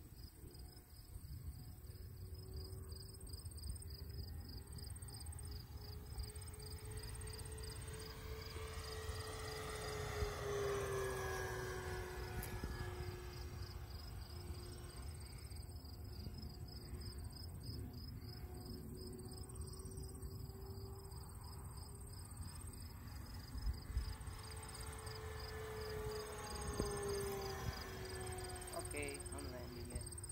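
Radio-controlled P-38 Lightning model airplane making low passes, its steady motor-and-propeller drone rising in pitch as it comes in and dropping as it goes by, once about ten seconds in and again near the end. Steady pulsing insect chirping and low wind rumble run underneath.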